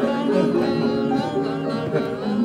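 Live piano accompaniment playing a slow melody of held notes that step from pitch to pitch.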